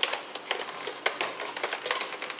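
Plastic faceplate of an iRobot Roomba being prised off by hand, its snap clips releasing around the rim in a series of small, irregular clicks.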